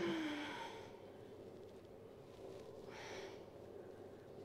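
A man's forceful breaths out while pressing heavy dumbbells. The first, at the start, is a short strained exhale with a low groan that falls in pitch. A softer breath out follows about three seconds in.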